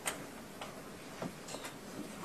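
A pause in the talk: faint steady hiss with a few soft, short clicks at uneven intervals, the first and loudest right at the start.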